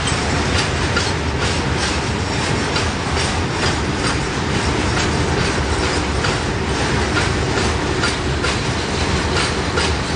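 Iron-ore freight wagons rolling past close by: a continuous steady rumble with several sharp wheel clicks a second as the wheels pass over the rail joints.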